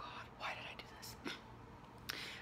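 Faint breathy mouth and breath sounds from a woman between words, with a small click at the start and no voiced speech.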